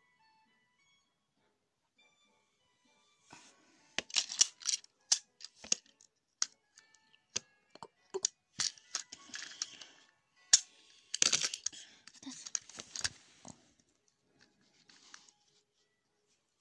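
Small plastic-and-metal toy trains being handled. Irregular clicks, clacks and short scuffs start about three seconds in and carry on until near the end, after a near-silent start with faint music.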